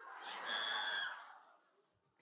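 Live audience giving a brief collective reaction, a crowd murmur that swells and fades out within about a second and a half.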